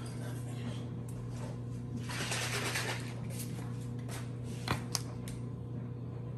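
Steady low electrical hum with kitchen handling noises over it: a short rustle about two seconds in, then two sharp clicks close together near the five-second mark as a plastic hot sauce bottle is handled.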